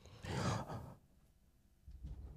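A man's audible breath close to the microphone, one soft breath lasting about half a second, taken in a pause between phrases of speech.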